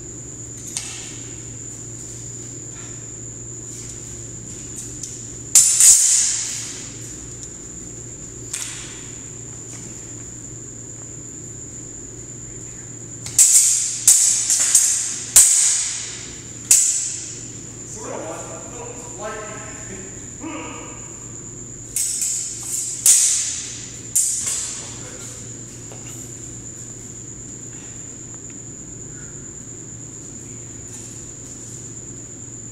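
Steel training swords, a longsword and an arming sword, clashing in sparring exchanges, each blade contact a sharp ringing clang. There are two clashes about five seconds in, then a quick flurry of five or six in the middle, and another flurry of four or five a few seconds before the end. A steady high-pitched whine sits underneath.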